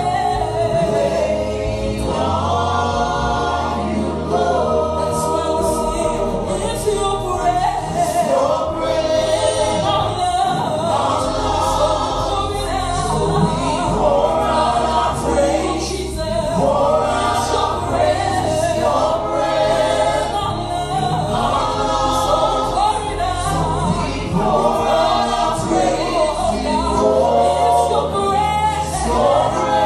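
A gospel worship team singing a praise song together, a lead voice over group harmonies, with the line 'so we pour out our praise to you only', over a sustained instrumental backing.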